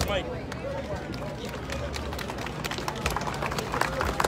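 Crowd chatter: several indistinct voices talking over a steady murmur, with scattered small clicks.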